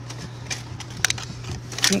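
A few light clicks and knocks from objects being handled on a table, over a steady low hum.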